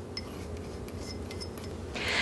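A few faint, light clicks and clinks of kitchen dishes being handled, over a low steady room hum.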